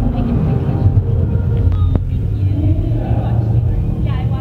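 A steady low rumble with women talking quietly over it, and a single click about halfway through.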